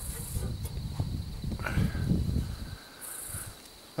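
Crickets chirping in repeated high-pitched pulses about half a second long over a steady high trill. Low knocks and rustling of someone climbing down a ladder run through the first two and a half seconds, then go quiet.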